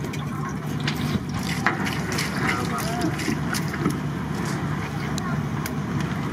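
Indistinct background voices over a steady low hum, with scattered light clicks.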